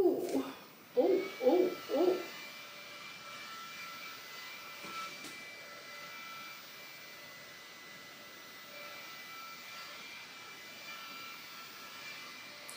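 Small battery-powered handheld fan running with a faint, steady whine. In the first two seconds there are a few short hummed notes.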